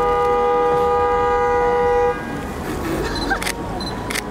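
A car horn held in one steady honk for about two seconds, cutting off suddenly.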